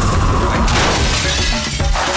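Dramatic film background score with a loud crashing, shattering sound effect near the start.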